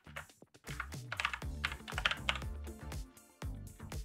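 Computer keyboard being typed on, a run of quick key clicks, with background music playing underneath.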